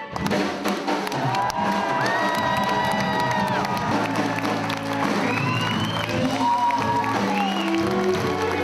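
Audience applauding and cheering, with music playing underneath.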